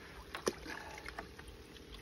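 Water splashing and sloshing in a plastic bucket as hands grab a channel catfish inside it, with a few short sharp splashes, the loudest about half a second in.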